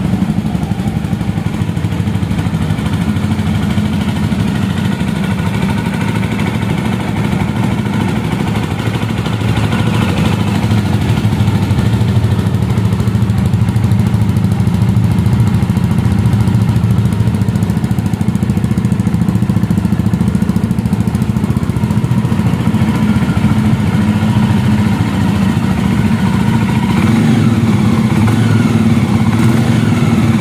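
2024 Jawa 350's single-cylinder engine idling steadily through its chrome exhaust, growing a little louder about ten seconds in.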